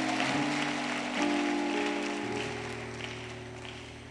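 Church keyboard playing slow, sustained chords that change every second or so, over a wash of congregation clapping and noise that slowly dies away.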